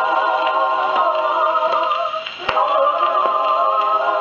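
A 1930 shellac 78 rpm dance record playing through the acoustic soundbox of a portable wind-up gramophone, thin and lacking in high treble. The music drops away briefly about two seconds in and comes back with a sharp click.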